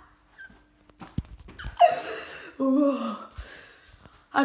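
A short wordless vocal sound from a person: a breathy gasp about two seconds in, followed by a voiced tone that falls in pitch, after a light knock about a second in.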